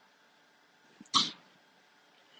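Near silence, broken about a second in by one short breathy noise, a quick breath from the narrator, preceded by a faint click.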